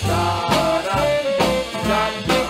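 A 1950s doo-wop record playing: a vocal-group arrangement with a band, bass notes falling about every half second under pitched voice and instrument lines.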